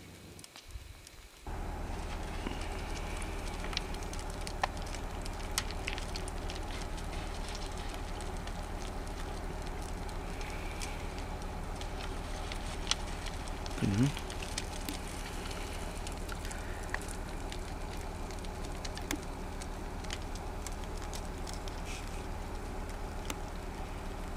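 Steady low hum of a vehicle engine idling, starting about a second and a half in, with scattered faint ticks over it. A brief voice-like sound comes about fourteen seconds in.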